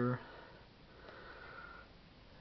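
The last syllable of a spoken phrase, then a faint, soft breath or sniff close to the microphone lasting about a second.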